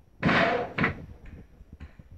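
Clatter of metal building material being handled during fence-building: a loud rattling bang about a quarter second in, a shorter knock just after it, then a few faint knocks.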